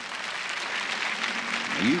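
A large studio audience applauding, a steady clatter of many hands clapping. A man's voice begins over it near the end.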